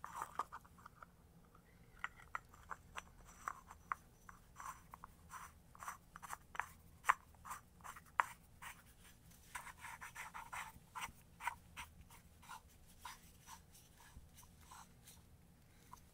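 A threaded plastic plug being turned by hand in a metal pipe fitting. The threads and fitting give a faint, irregular run of small clicks and scrapes.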